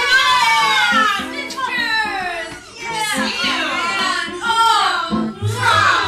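Several women's voices shrieking and squealing excitedly in an overlapping, high-pitched greeting, over background music.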